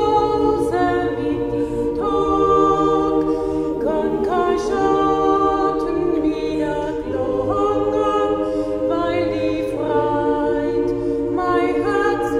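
Mixed choir of men's and women's voices singing a Carinthian folk song a cappella in close harmony, holding sustained chords that change every second or two.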